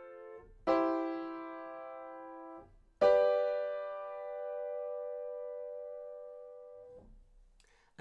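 Acoustic piano playing block chords of an F–C–G (IV–I–V) progression in C major. The first chord is ringing out, a second is struck about a second in and held, and a third, the loudest, is struck at about three seconds and held, fading, until it is released near seven seconds.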